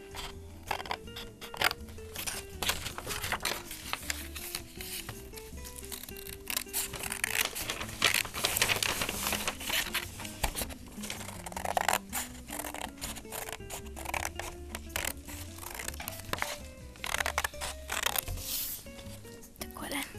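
Scissors snipping repeatedly through stiff green paper, with paper rustling between cuts, over soft background music.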